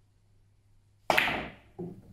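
Carom billiards shot: a sharp click as the cue strikes the ball about halfway through, ringing briefly, then a duller, quieter knock less than a second later as a ball hits.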